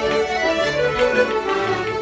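Button accordion and fiddles playing an Irish traditional tune together in a session, a lively stream of quick melodic notes.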